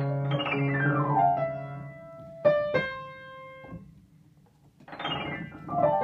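Acoustic piano played by a toddler banging on the keys: a quick run of notes falling in pitch over held bass notes, then two struck clusters that ring out and die away almost to silence. A new burst of falling notes comes near the end.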